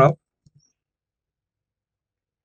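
The tail of a spoken word, then two faint computer-mouse clicks close together about half a second in, followed by dead silence.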